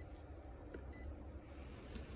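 Key beeps from a FNIRSI 2C53T handheld oscilloscope as its buttons are pressed: two short, faint, high beeps about a second apart, over a low steady hum.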